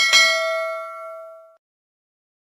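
Notification-bell 'ding' sound effect: one bright struck chime with several ringing tones that fades away over about a second and a half.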